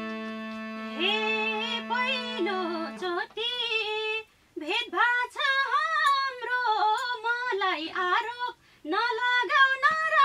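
A woman singing a dohori folk verse, starting over a harmonium's held chord that dies away about three seconds in, then carrying on unaccompanied with two brief breaks for breath.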